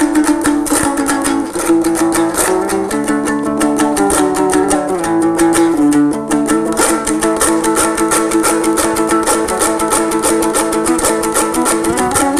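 Kazakh dombra, a two-stringed long-necked lute, strummed in quick, even strokes as a solo instrumental melody.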